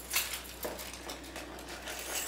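Quiet rustling of clothing with light, irregular handling clicks.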